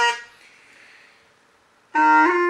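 A long bamboo pipe played solo: a held note ends just after the start and fades away, then a pause of about a second and a half before the next phrase starts near the end.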